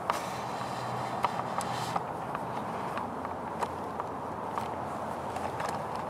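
Hemlock branches rustling, with scattered small ticks and snaps of twigs and needles as a bee brush and gloved hands push into the dense boughs. Under it runs a steady, low background noise.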